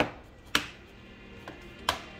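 Clips of a Lenovo ThinkPad E15's bottom cover snapping into place as it is pressed down: three sharp clicks spread over about two seconds, with a fainter one just before the last.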